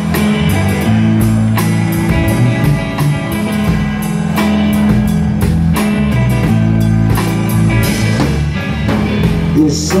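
Live band music played loud in a small room: electric guitar, bass guitar and drum kit playing a steady mid-tempo groove, with regular drum hits. A man's lead vocal comes in near the end.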